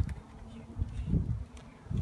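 Honeybees buzzing around a frame lifted from an open hive, a faint steady hum, with low irregular rumbles underneath.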